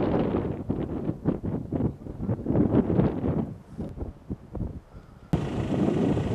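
Wind buffeting the microphone outdoors: a loud, rough rumble with irregular gusty thumps. It changes abruptly to a steadier rush near the end.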